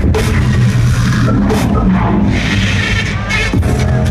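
Loud live electronic drum and bass music over a large concert sound system, heard from within the crowd: heavy sustained bass notes under distorted synth sounds, with a bright, hissing swell about halfway through.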